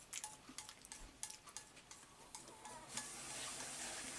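Chopsticks tapping and scraping against a ceramic bowl while eating, a run of small light clicks. A steady hiss comes in about three seconds in.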